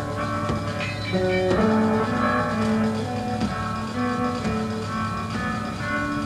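Instrumental music: a slow melody of separate held notes, with guitar, over a steady low hum.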